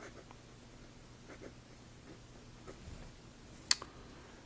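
Zebra V-301 fountain pen's fine hooded nib writing on paper, faint light scratching strokes, with one sharp click near the end.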